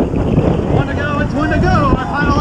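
Wind rushing over a bicycle-mounted camera's microphone at about 31 mph. From about a second in, spectators' raised voices call out over it.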